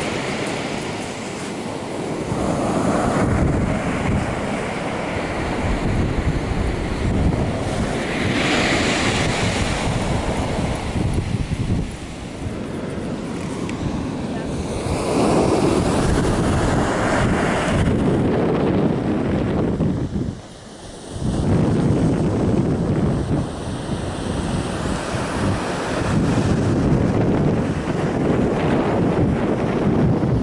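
Ocean surf washing onto the beach, with wind rumbling on the microphone; the noise dips briefly about two-thirds of the way through.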